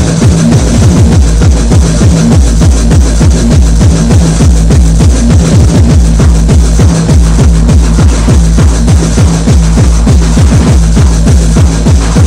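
Tape-recorded techno DJ set: electronic dance music with a steady, fast kick-drum beat over a held bass line.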